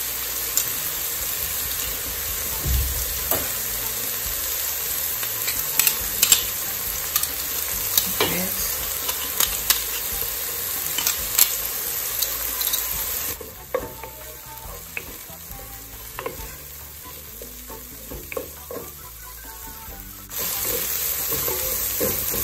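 Onion and scallion frying in oil in a pot, a steady sizzle, with several sharp metallic clicks and taps from a garlic press as garlic is squeezed into it. The sizzle drops much quieter a little past the middle and comes back near the end.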